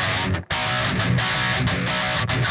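Distorted electric guitar playing a fast heavy-metal riff, with a short gap about half a second in.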